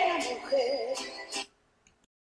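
A woman singing a Spanish-language song with a live band, a wavering held note and drum and cymbal hits about twice a second. The music stops dead about one and a half seconds in.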